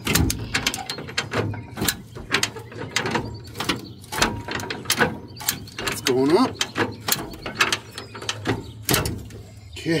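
Original-equipment 1960 Ford ratchet bumper jack being pumped by its handle, its pawl clicking through the ratchet teeth about twice a second as it lifts the rear of the car by the bumper.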